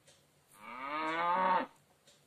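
A cow mooing once, a call of about a second whose pitch rises and then drops as it ends.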